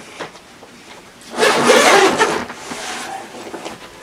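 The main-compartment zipper of an LA Police Gear Operator backpack is pulled open in one long draw starting about a second in, followed by fainter rustling of the pack fabric as the compartment folds open.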